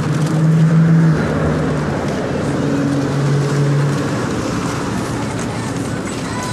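City street traffic noise with a motor vehicle's engine droning nearby, a steady low hum for the first few seconds that eases off later.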